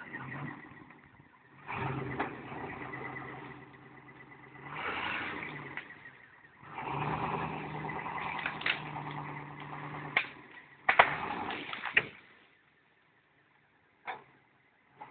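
Classic Range Rover's V8 engine running in several bursts of throttle under load as it drags a fallen tree trunk on a tow strap. A few sharp knocks come near the end, and then the sound drops almost to nothing.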